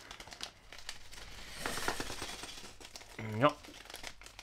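Lure packaging crinkling and crackling as it is handled and opened by hand, busiest and loudest about halfway through.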